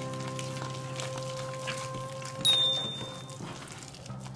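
Soft background music of sustained held notes. About two and a half seconds in, a short high chime rings over it.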